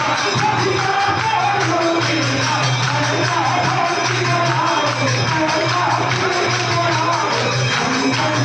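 Hindu devotional music: a wavering sung melody over steady jingling percussion and a low repeating beat.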